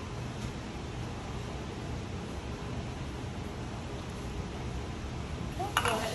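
Steady, featureless room noise, a low even hiss and hum, with a short sharp click shortly before the end.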